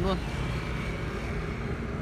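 A steady low rumble of vehicle noise with no distinct events.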